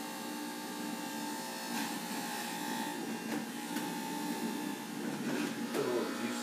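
Electric juicer motor running steadily with a hum made of several fixed tones while kale is pushed down the feed chute, with a few faint clicks and rattles from the produce being cut.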